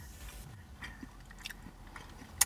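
A person chewing a mouthful of breaded fried chicken, with faint soft mouth clicks and ticks.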